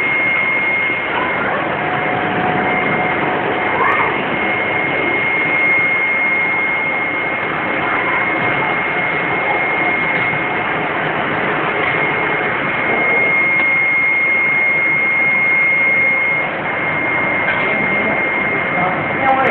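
Flat screen printing machine running: a steady whirring noise with a constant high-pitched whine over it.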